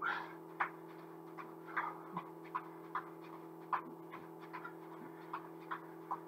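Soft, irregular footfalls of a person jogging and hopping in place on an exercise mat, roughly one or two a second, over a steady electrical hum.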